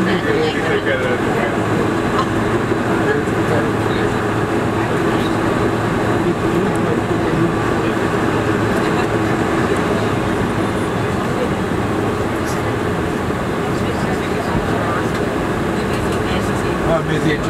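Steady cabin noise inside a Boeing 747-400 rolling along the taxiway after landing: the engines running at idle over the rumble of the wheels. Passengers talk in the background.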